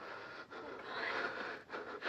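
A person breathing hard and fast in fright, a few long breathy pulls of air.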